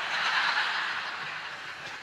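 Audience laughing at a joke, swelling right away and then fading out.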